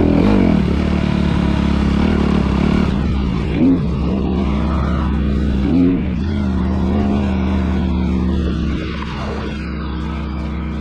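A 250cc motocross dirt bike engine running steadily at low revs, with two short throttle blips about three and a half and six seconds in. It drops a little lower near the end.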